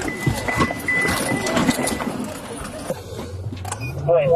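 Clatter and rustling of people scrambling in and around a car, with a steady high-pitched electronic beep for about the first two seconds. Near the end a low car-engine hum starts and rises in pitch as the car pulls away.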